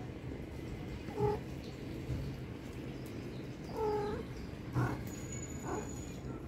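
A kitten meowing twice: a short meow about a second in and a longer, drawn-out meow about four seconds in. A soft knock follows near the end.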